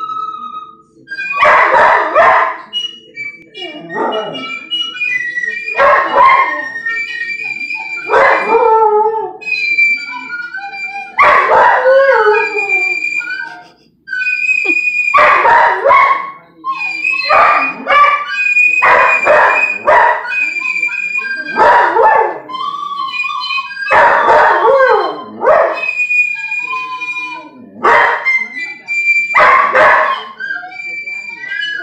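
A Belgian Malinois howling along to a flute: a dozen or so drawn-out howls about every two seconds, several sliding down in pitch, between and over the flute's steady held notes.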